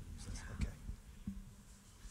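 Faint whispering, with a few soft low thumps of movement, the clearest about half a second in.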